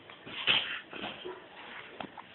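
A toddler making short high-pitched vocal sounds: a loud one about half a second in and a weaker one near one second.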